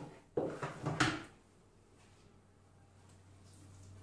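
Plastic lid of a Monsieur Cuisine Connect food processor lifted off the bowl and handled, giving a few short knocks and clatters in the first second or so, then only faint room tone.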